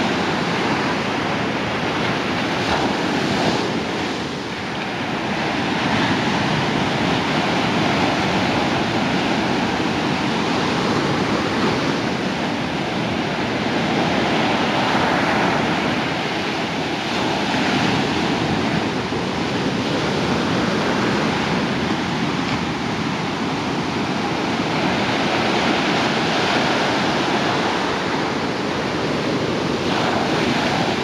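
Ocean surf: small waves breaking and washing up a sandy beach, a steady wash of noise that swells and eases every few seconds.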